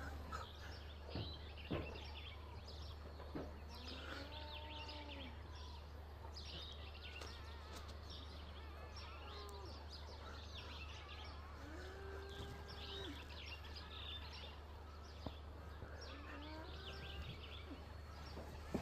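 Faint birds chirping and calling, short high chirps mixed with a few curved, arching calls, over a steady low hum.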